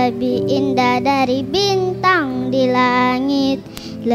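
A young girl singing a Malay Christian children's song into a microphone over steady backing music, her voice amplified, with a brief pause between phrases near the end.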